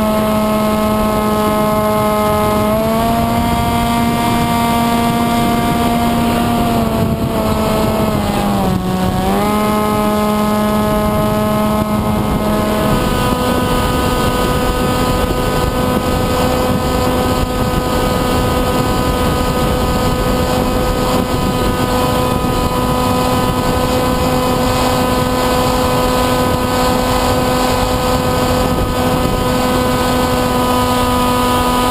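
Skysurfer radio-control plane's electric motor and propeller running steadily, heard from the GoPro mounted on the plane, with wind hiss. The pitch steps up slightly about three seconds in, dips briefly near nine seconds, and settles to a slightly different steady tone about thirteen seconds in, as the throttle changes.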